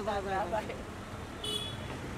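A voice during the first half second, then steady street traffic noise with one brief, high car horn toot about one and a half seconds in.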